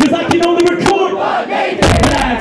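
Loud shouted, chant-like vocals at a live rap show, held on one pitch, over a hip hop drum beat through the PA.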